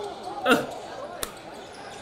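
Basketball bouncing on a hardwood gym floor, with one sharp bounce about a second and a quarter in.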